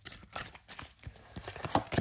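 A deck of tarot cards being shuffled by hand and a card drawn from it: a string of irregular light flicks and taps of card on card.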